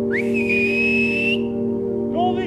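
One loud, breathy whistle, sweeping up quickly and then holding a high, slightly rising note for about a second and a quarter before stopping, blown to call a hound back.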